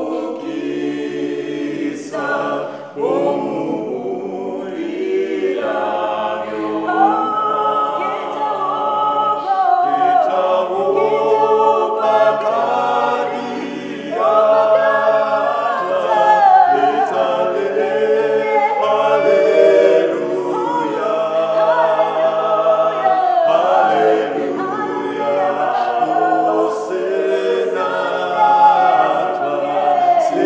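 Mixed-voice a cappella gospel group of five singers, a woman's voice with men's, singing together in harmony with no instruments.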